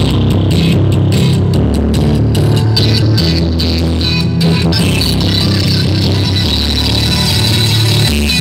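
Loud electronic dance music with heavy bass played through a truck-mounted DJ speaker stack; a sustained high synth line comes in about five seconds in.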